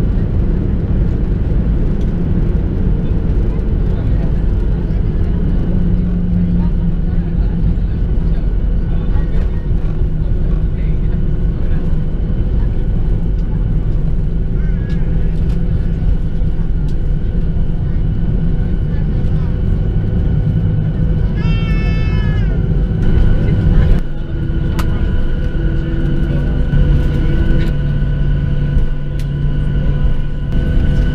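Cabin noise in a Boeing 737-700 rolling out after landing: the engines and wheels on the runway make a loud, steady rumble with a steady engine whine over it. A short, wavering high-pitched sound comes about two-thirds of the way in. Soon after, the rumble drops and changes as the aircraft slows.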